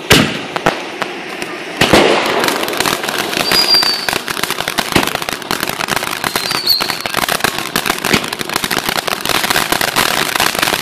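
Ground firework fountain spraying sparks with a dense, rapid crackle. There is a sharp bang at the start and a louder burst about two seconds in, after which the crackling runs on continuously.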